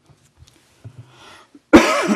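A man coughs loudly into a handkerchief, starting suddenly near the end after a near-quiet pause.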